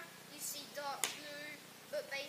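A child's voice speaking briefly, with one sharp click about halfway through.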